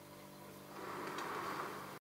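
Quiet workshop room tone with a steady faint hum. About a second in, a soft rustling handling noise rises over it.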